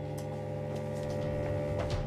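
Background music: a low sustained chord held steady and swelling slightly, with a few faint clicks.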